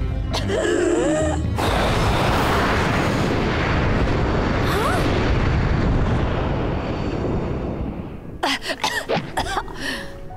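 Cartoon sound effect of a huge gush of dragon fire breath: a loud, continuous rushing of flame lasting about six seconds, which fades out near the end into a few short choppy sounds. It comes right after a gasp and a fit of coughing.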